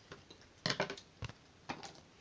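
A few light taps and scrapes of cut cardboard pieces being handled and set down on a tabletop, spaced about half a second apart.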